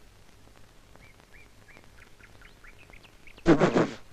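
Faint, repeated high chirps of small birds, then a short loud harsh call near the end.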